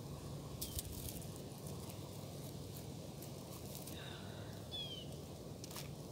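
Quiet outdoor ambience: a steady low rumble with a few faint clicks, and two short high chirps about four and five seconds in.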